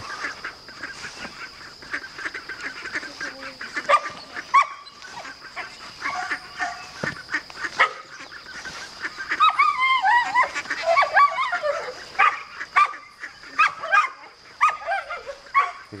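Six half-grown ducklings calling as they walk through grass: a running string of short quacks and peeping calls, busiest from about nine to twelve seconds in.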